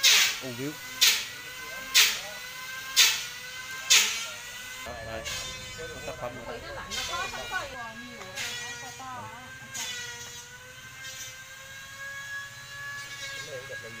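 Sharp knocks, five of them about a second apart, each ringing briefly, then a steady hum made of several held tones.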